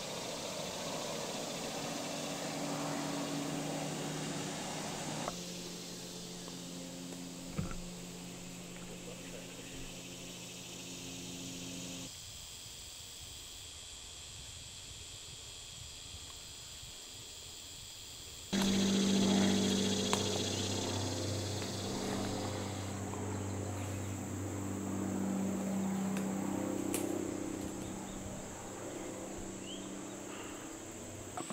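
Summer woodland ambience: a steady high drone of insects, with a low hum underneath that changes abruptly several times. There is one small knock about a third of the way in.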